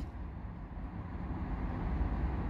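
Steady low vehicle rumble heard inside a car's cabin, growing slightly louder toward the end.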